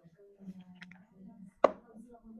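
A single sharp knock of a hard handheld massage tool being handled, about one and a half seconds in, over faint low murmuring.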